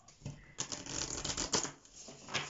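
A deck of tarot cards being shuffled by hand: a quick run of crisp card clicks and rustling starting about half a second in.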